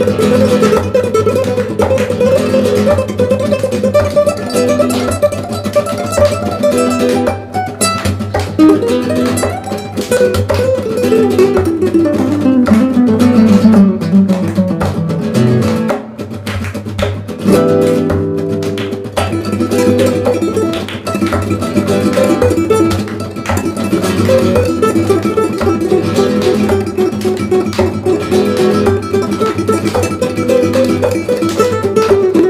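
Two nylon-string classical guitars playing a flamenco-style duet, with fast picked notes over a steady low bass line. About ten seconds in, a long run descends in pitch for several seconds, then the playing dips briefly and picks up again.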